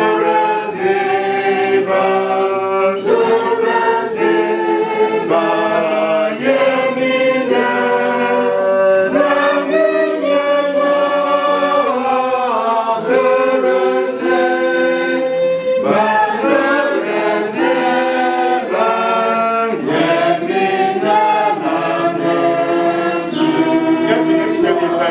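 A group of voices singing a hymn together unaccompanied, in several-part harmony, with long held notes.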